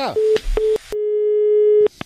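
Telephone line tones at the end of a phone call: two short beeps followed by a longer steady tone of about a second, which cuts off suddenly.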